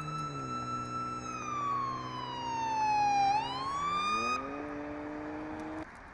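Emergency vehicle siren wailing, its pitch gliding slowly down and then back up before it cuts off abruptly about two-thirds of the way in. A lower droning tone runs under it and stops suddenly near the end, leaving a faint traffic hiss.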